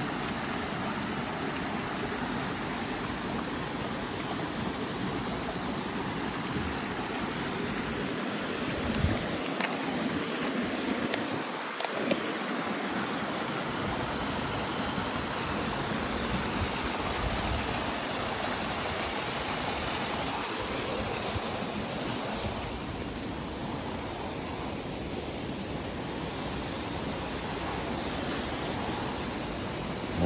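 Muddy storm runoff rushing steadily down a small woodland stream channel, its flow swollen by hurricane rain.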